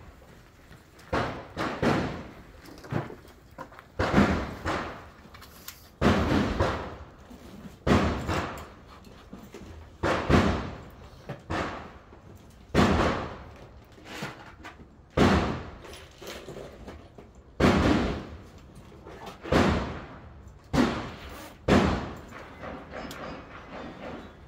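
Rimfire .22 rifle shots fired at steel plates, each a sharp crack, coming in pairs and short runs about half a second apart with a pause of a second or two between runs.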